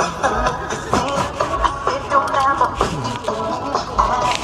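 Music playing from a radio, with a continuous melody.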